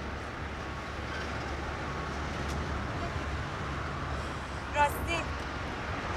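Steady low rumble of road and engine noise inside a moving car's cabin, with a short spoken word or two about five seconds in.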